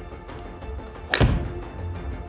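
Callaway Paradigm hybrid striking a golf ball off a hitting mat: one sharp impact about a second in, over steady background music.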